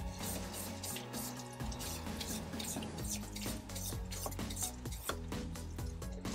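Fillet knife being sharpened: a quick run of short metal scraping strokes, several a second, over background music.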